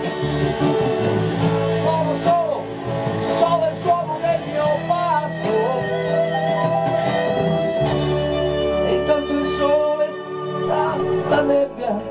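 A small live band playing an instrumental passage, with acoustic guitar and a wavering melodic lead line over a steady bass.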